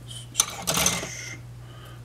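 Hard plastic model-kit parts being handled: a sharp click about half a second in, then a brief plastic clatter lasting under a second, over a faint steady low hum.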